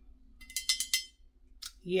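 Hands handling a glazed porcelain vase: a quick run of about six light clicks against the ceramic within half a second, then one more click a little later.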